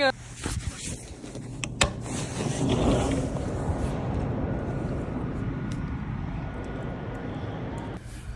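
City traffic noise from the streets below, a steady hum that swells about three seconds in and then holds. Near the start there are a couple of sharp clicks from handling the phone.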